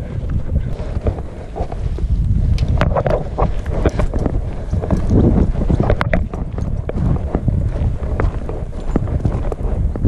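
Quick footsteps on a dirt trail and then on a gravel river bar, an irregular run of crunches and knocks, with wind rumbling across the microphone.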